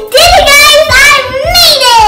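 A young girl's high voice, wordless and loud, in about three long sing-song notes that slide up and down.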